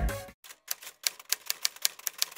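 Typewriter key-strike sound effect: a quick run of sharp clacks, about six a second, accompanying on-screen text being typed out. Electronic music fades out just before the clacks begin.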